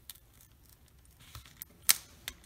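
Cardstock handled by fingers as a layered paper piece is lifted and shifted on a card: faint paper ticks, then one sharp click near the end.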